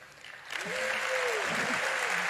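A large audience bursts into applause about half a second in, and the clapping holds steady. Early on, one voice calls out over it in a long cheer that rises and falls.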